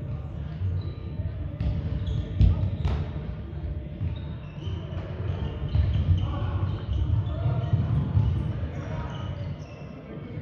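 Indoor team game in a sports hall: players running with thuds on the court floor and voices calling, with two sharp knocks about two and a half and three seconds in.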